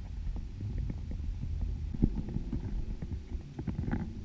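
Underwater sound from a camera in a waterproof housing on a lake dive line: a muffled low rumble with scattered clicks and taps, the sharpest about two seconds in and just before the end.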